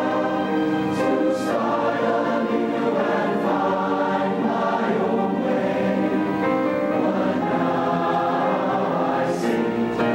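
A large choir of students singing a song together, holding long notes that change pitch every second or so, with the hiss of sung consonants now and then.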